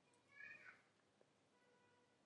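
A faint, brief high-pitched cry about half a second in, its pitch sliding slightly downward, in otherwise near silence.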